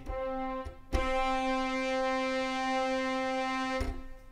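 Sampled brass note played from the keyboard in a Halion 6 orchestral program: a short note, then the key is struck again about a second in and held steady for about three seconds before it cuts off.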